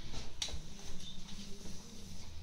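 A whiteboard marker being uncapped: one sharp click about half a second in, amid faint handling noise and small ticks.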